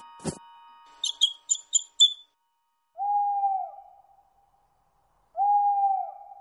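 Two long cartoon owl hoots, each held on one pitch and dropping off at the end, the second near the end. They follow a quick run of five high bird chirps about a second in, and two short soft knocks open it.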